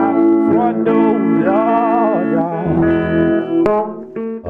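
Electric guitar playing a repeating hill country blues figure while a man sings a long, wavering wordless vocal line over it; deeper bass notes come in after about two and a half seconds.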